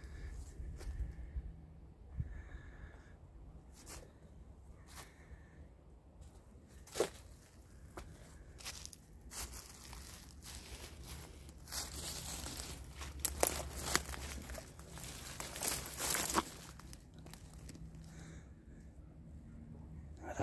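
Footsteps crunching through dry fallen leaves and brush on a forest floor, with scattered sharp snaps of twigs and branches; the rustling is busiest from about twelve to seventeen seconds in.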